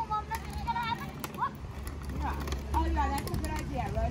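Children's high-pitched voices calling and chattering, over the low rumble of inline skate wheels rolling on a paved path.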